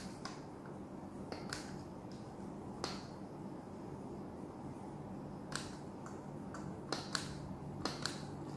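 Faint, irregular clicks of the buttons on a handheld infrared thermometer being pressed one at a time, about nine presses, heard over a low room hum.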